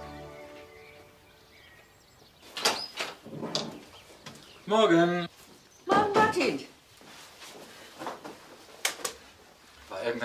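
Soft music fading out, then a quiet room with a few short, unclear voice utterances about five and six seconds in, faint chirps before them, and a sharp click near the end.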